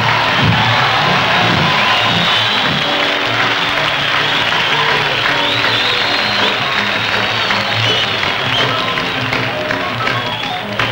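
Audience applause and cheering, breaking out suddenly at the start and staying loud, over a live jazz combo still playing underneath.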